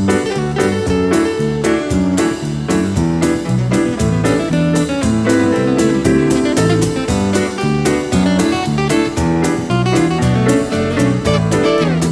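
Live acoustic band playing an instrumental break with a steady beat: acoustic guitar, piano, bass, and hand percussion on congas and cymbals.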